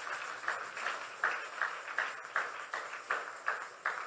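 Audience clapping together in a steady rhythm, about three claps a second.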